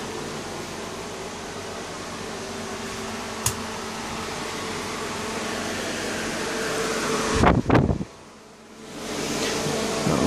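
Electric fan running with a steady whir and a faint motor hum. A sharp click comes about three and a half seconds in, and a few loud thumps near the end, after which the whir briefly drops away and returns.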